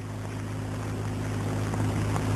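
A steady low hum over a faint hiss, slowly growing louder.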